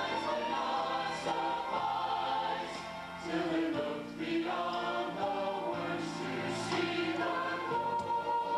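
Church choir singing a cantata in long held chords that change every second or two.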